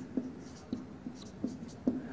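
Marker pen writing on a whiteboard: a run of short, irregular strokes and taps.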